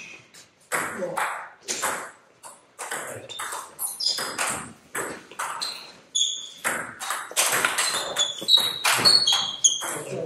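Table tennis rally: the ball clicking off the players' rubber-faced bats and bouncing on the table, an uneven run of sharp taps and pings that comes faster near the end.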